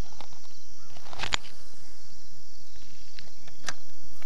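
Steady outdoor ambience with a constant high insect drone, with a few sharp clicks: two close together about a second in and one near the end.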